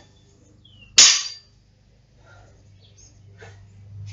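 A loaded barbell dropped from hip height onto the gym floor: one loud impact about a second in, with a brief rattling decay.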